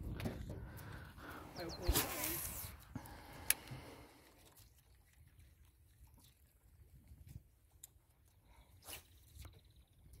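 Faint, indistinct voice-like sounds and a single sharp click in the first few seconds, then a quiet stretch with a few more clicks.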